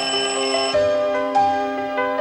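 An alarm clock ringing steadily stops about three quarters of a second in as it is switched off. Background music with soft keyboard notes plays throughout.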